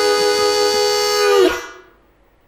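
Harmonica cupped in the hands, holding one long chord that bends down in pitch about one and a half seconds in and then fades away.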